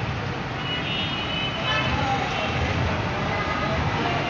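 Traffic in a jam: the engines of buses, cars, motorcycles and auto-rickshaws running as a steady rumble, with voices mixed in.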